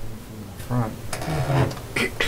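Indistinct talk from people around a meeting table, with a few short knocks.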